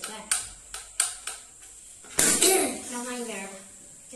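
Stainless electric kettle being handled: four sharp plastic clicks in the first second and a half. About halfway through, a short stretch of a voice follows.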